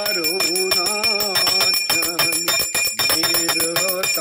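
Hanging brass temple bell rung continuously, its clapper striking rapidly, many times a second, under steady high ringing tones. A voice chants along in long, wavering notes.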